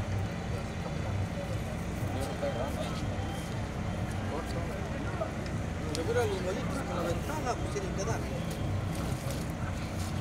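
Tractor engine running steadily at low speed while it drags a harrow over the dirt track, with people's voices talking on and off over it.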